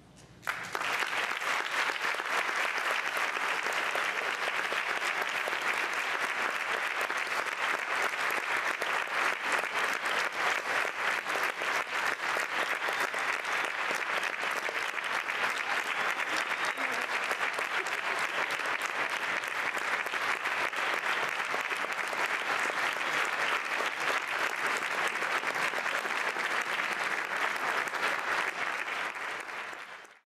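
Audience applauding, breaking out about half a second in as the last note dies away and going on as steady, sustained clapping that fades near the end.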